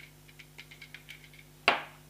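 Gel blaster magazine handled in the hands with a run of light clicks and ticks, then set down on a wooden tabletop with one sharp clack near the end.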